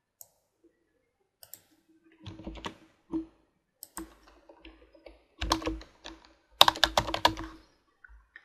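Computer keyboard typing: a couple of single clicks, then short runs of keystrokes, the loudest run near the end.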